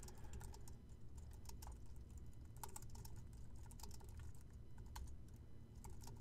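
Typing on a computer keyboard: faint, irregular key clicks.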